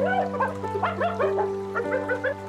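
Hyena cubs giving a rapid string of short yipping squeals, each call rising then falling in pitch, about four a second. Background music with a steady low drone plays underneath.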